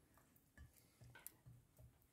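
Near silence, with a few faint soft ticks and taps of a table knife against a ceramic baking dish as butter is spread.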